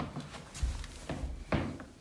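Wooden shed door being handled: a low rumble and then a single knock about one and a half seconds in.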